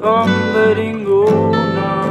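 Two acoustic guitars strummed and picked together, with a wordless sung line gliding over them.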